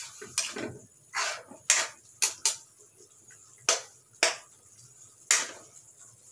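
Metal spoon scraping and knocking against an aluminium pan while stirring a thick tomato sauce: about nine irregular strokes, some short clinks and some longer scrapes.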